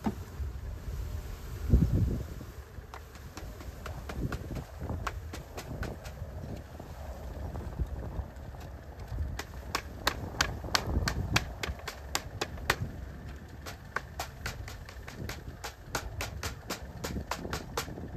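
A wooden package of honey bees being tapped to knock the cluster down and out into the hive. There is one heavy thump about two seconds in, then a run of quick, sharp taps, several a second, through the second half.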